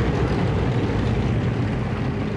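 Tank engine running, a steady low rumble.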